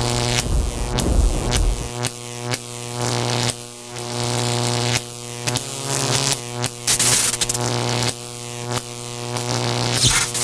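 Electronic dance music intro: a sustained synth tone with many overtones over a deep bass that drops out about two seconds in, punctuated by sharp hits and a rising noise swell near the end.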